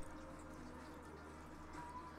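Faint room tone from an open microphone: a steady low hum and hiss, with a small click right at the start.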